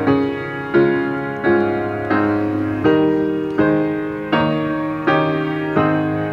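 Piano playing the school song: a steady run of chords, one struck about every three-quarters of a second, each ringing and fading before the next.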